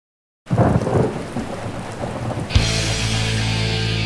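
A thunderstorm sound effect, thunder rumbling with rain, starts suddenly about half a second in as the intro to a heavy metal track. About two and a half seconds in, a sustained distorted guitar and bass chord with a cymbal crash comes in over it.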